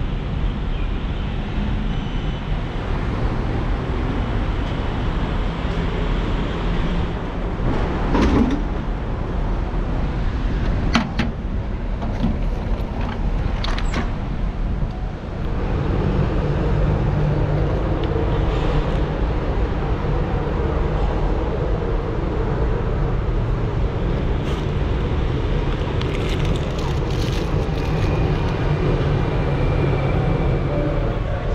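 Steady street traffic noise, with a few sharp clicks and knocks in the first half. From about halfway through a slightly louder, steadier hum comes in.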